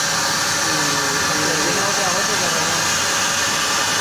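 The plasma torch of an Apmekanic SP1530 Maxcut CNC plasma table cutting steel plate, with the arc making a steady, loud, high hiss that does not change.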